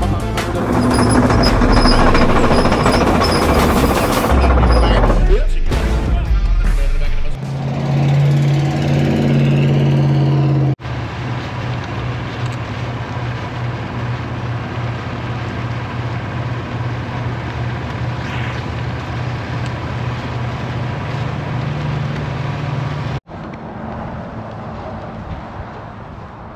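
Intro music for about the first ten seconds, then a vehicle's engine drone with road noise while it drives, cut off suddenly near the end to a quieter steady noise.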